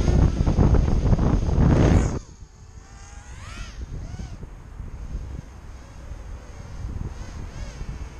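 Micro quadcopter with Racerstar 1306 brushless motors on a 3S battery, its motors whining loudly with prop wash buffeting the microphone as it lifts off close by. The loud part cuts off about two seconds in, and the distant motors then whine faintly, rising and falling in pitch as the throttle changes.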